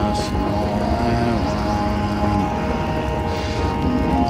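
Orchestral film score: held chords over a deep, steady low rumble, with a brief hiss right at the start.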